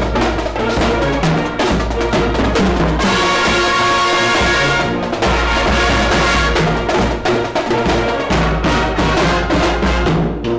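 A high-school marching band playing live at close range: brass with sousaphones over a steady drum beat, with a held brass chord about halfway through. The sound is loud enough to distort the recording.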